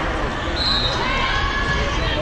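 Volleyball rally: the ball being struck and players moving on the court, over players calling and spectators talking and shouting.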